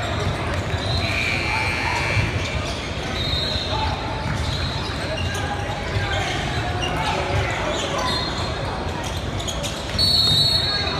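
Basketball game noise echoing in a large gym: the ball bouncing on the hardwood floor, short high sneaker squeaks, and voices of players and spectators around the court.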